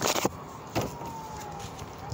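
A distant emergency-vehicle siren wailing, its pitch falling slowly and starting to rise again near the end. A few short rustles and snaps of playing cards being handled, near the start and again just under a second in.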